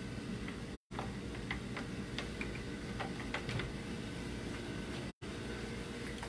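A steady low machine hum, with scattered light ticks and clicks over it. The sound drops out completely for a moment twice.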